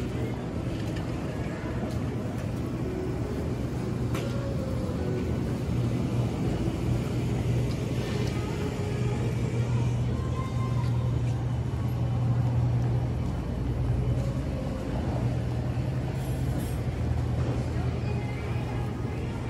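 Airport terminal concourse ambience: a steady low hum with faint background music and distant voices.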